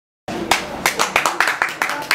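A small group clapping their hands, irregular claps starting suddenly after a moment of dead silence, with voices talking underneath.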